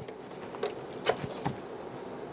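A few soft clicks from test-bench gear being handled as a signal connection is switched over, with a faint steady hum underneath.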